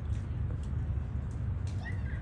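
Steady low rumble of wind buffeting the microphone, with a short high-pitched call near the end.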